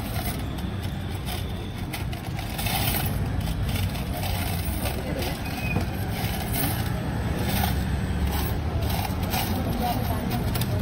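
Busy street ambience: a steady low traffic rumble with indistinct voices talking in the background and a few short clicks.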